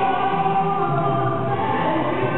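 Male pop singer singing live into a handheld microphone, holding long notes over musical accompaniment through a PA system.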